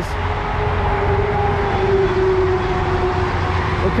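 Highway traffic going by close at hand: a steady low rumble and road noise, with a faint hum that swells around the middle and fades near the end.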